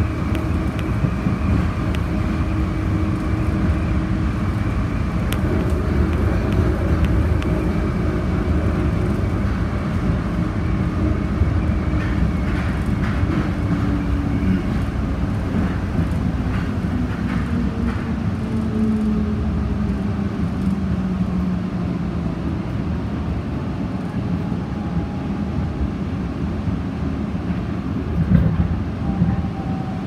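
An airport automated people mover tram running along its concrete guideway, heard from inside the car: a steady rumble with a motor whine and some rattles. The whine falls in pitch about halfway through as the tram slows toward the station.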